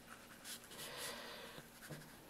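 Round watercolour brush dabbing and stroking paint onto wet paper: a few faint, short brushing sounds.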